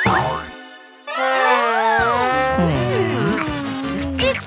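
Edited-in cartoon sound effects and music: a short sliding twinkle that fades away within the first second, then a dense run of warbling, sliding tones from about a second in, with a low bass part joining about a second later.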